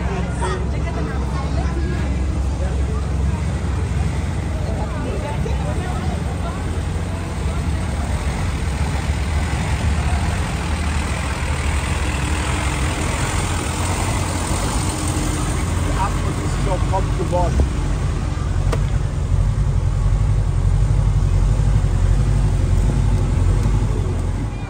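Engine of a vintage bus running slowly at walking pace close by, a steady low rumble, under the voices of people walking alongside.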